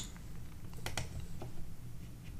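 A few short computer clicks, two close together about a second in and one shortly after, as the notebook's run is started, over a faint low hum.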